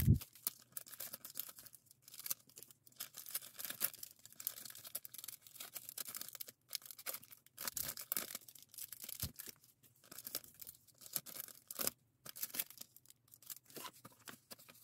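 Thin clear plastic packing bags crinkling and rustling in irregular bursts as small handmade pieces are slipped into them and handled, with a soft thump at the very start.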